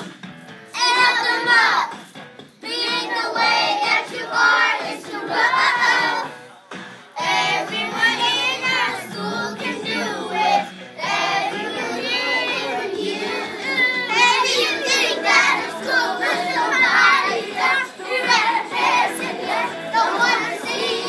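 A group of young children singing a song together, line by line, with short pauses between phrases.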